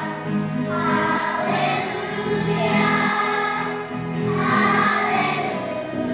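Children's choir singing in unison, a few sustained sung phrases one after another.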